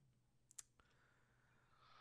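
Near silence, broken about half a second in by two faint, brief clicks close together, the second louder.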